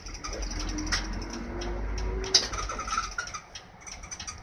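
Low steady rumble of an Isuzu Erga Mio bus's six-cylinder diesel engine, heard from on board, which fades about three seconds in. A few sharp clicks and faint short tones sit over it.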